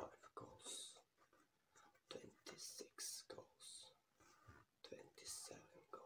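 Soft whispered speech close to the microphone: a man counting goals in a whisper, with a hissing 's' every second or so.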